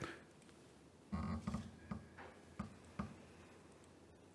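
Quiet room tone with about four faint, short knocks between one and three seconds in.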